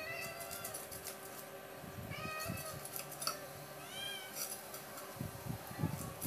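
A domestic cat meowing three times, about two seconds apart, each call short and bending in pitch, over quick scratchy clicks.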